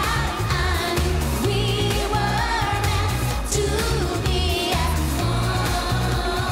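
Live dance-pop song from a band with electric guitars, with a female lead vocal over a steady driving beat.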